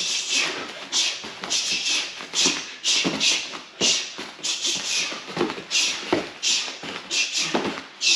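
Short, sharp hissing exhalations, about two to three a second, as two kickboxers throw rapid punches and knees at the air. Bare feet shuffle and thud on the gym mats between them.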